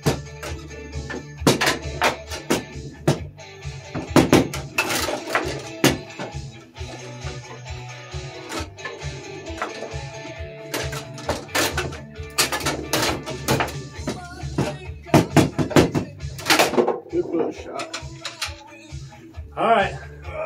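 Foosball being played: a string of sharp clacks and knocks as the plastic men strike the ball and the ball hits the table walls, some in quick flurries. Background music with a steady bass beat runs underneath.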